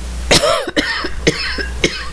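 A woman coughing: one strong cough about a third of a second in, followed by a string of shorter coughs.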